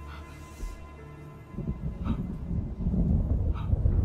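Low rumbling swell in a horror film's soundtrack, starting about a second and a half in and growing louder, with a couple of faint ticks.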